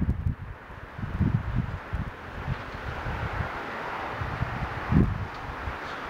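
Strong gusty wind buffeting the camera's microphone in uneven low thumps, the sharpest about five seconds in, over a rush of wind through the trees that swells in the middle.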